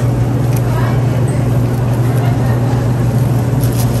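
Refrigerated deli display case running with a steady low hum, under a hiss of store background noise.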